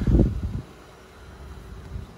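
A short gust of wind buffeting the microphone in the first half-second, then a low steady rumble.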